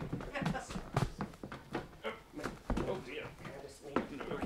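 Scattered voices and a few thumps as one performer clambers onto another's back on stage, a knock about a second in and a heavier thump near the end.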